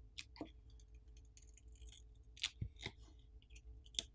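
Faint clicks and scrapes of a plastic pry pick and spudger working against the Samsung Galaxy S22 Ultra's frame while prying off the adhesive-held S Pen enclosure cover. There are a few sharper clicks a little past the middle.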